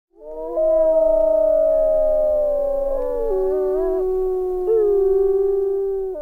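A chorus of wolves howling: several long howls overlapping, each holding its pitch, then stepping up or down with short wavering glides.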